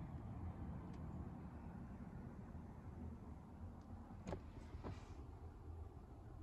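Quiet, steady low background rumble with two faint clicks, a little after four seconds and just before five seconds in.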